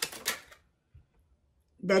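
A pause in a woman's speech: a few faint clicks at the start, then about a second of near silence before she speaks again near the end.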